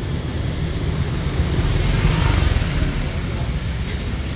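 Steady street traffic rumble, with a passing vehicle swelling louder about two seconds in.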